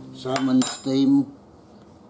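Tableware clinking: a quick cluster of sharp clinks with a bright ringing tail in the first half-second or so. With it come two short pitched sounds, the second and loudest about a second in.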